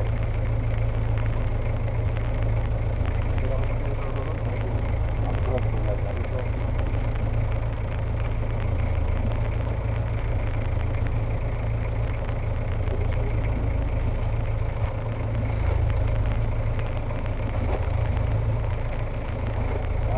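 Fishing boat's engine running steadily, a constant low drone with no change in pitch or level.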